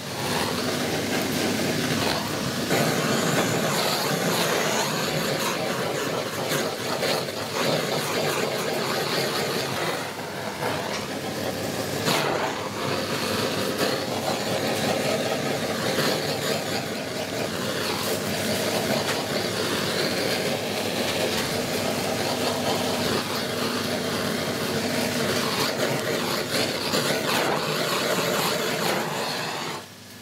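Handheld gas blowtorch burning with a steady hiss as it is played over a plucked partridge to singe off the last of the down and feathers. It dips briefly twice and cuts off at the end.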